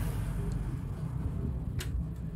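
Steady low rumble in the background, with a faint tick about half a second in and one sharp click near the end as a small power-supply circuit board is handled.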